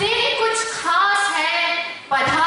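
A girl singing solo into a microphone: two long sung phrases with held notes, with a short breath about a second in.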